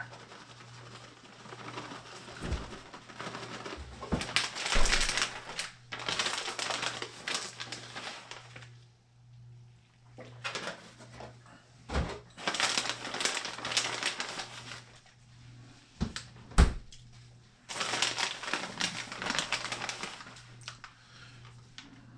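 Plastic bag of shredded mozzarella crinkling in several bursts as the cheese is shaken out over a pizza, with a couple of sharp taps in between.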